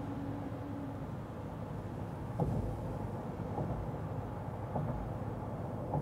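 Road and tyre noise heard inside the cab of a Ram 1500 pickup cruising at highway speed: a steady low rumble, with a few faint thumps about a second apart from the middle on.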